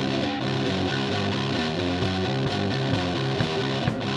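Rock music led by electric guitar, playing steadily with no singing.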